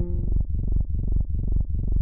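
Electronic music: a low synthesizer line pulsing about four notes a second, with the brighter high parts dropped out.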